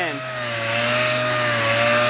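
Random orbital sander with 80-grit paper running against a knot in reclaimed barn-wood, grinding it down and rounding it off. A steady whine over a gritty hiss.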